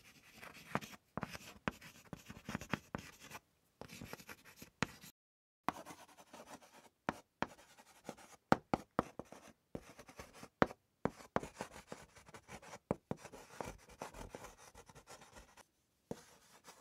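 A pen scratching across paper in quick, irregular strokes as words are written out, broken by brief pauses between stretches of writing.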